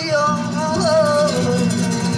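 Live flamenco-style song: a voice sings a wavering, ornamented closing line over a Spanish guitar. The singing dies away about one and a half seconds in while the guitar keeps playing.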